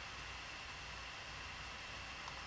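Faint steady hiss with a low hum and a thin high whine: the background room tone of a voice-over microphone.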